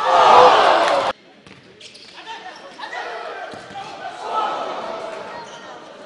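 Futsal match in an echoing sports hall: loud shouting for about the first second, cut off suddenly, then scattered players' calls and the thud of the ball on the court.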